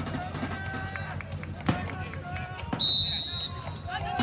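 Players calling out across an outdoor football pitch, then one short blast of a referee's whistle about three seconds in, as play restarts at the centre circle.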